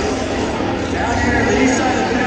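Indistinct speech over a steady, noisy background, the voice clearest from about a second in.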